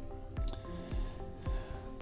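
Soft background music: held tones over a steady low beat of about two a second.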